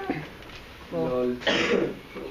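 A person clearing their throat: a short voiced sound about a second in, then a harsh cough-like burst about half a second later.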